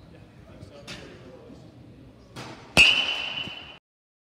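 A baseball bat hitting a pitched ball in a batting cage: one sharp crack near the end, followed by a ringing tone that lasts about a second before the sound cuts off suddenly. A fainter knock comes about a second in.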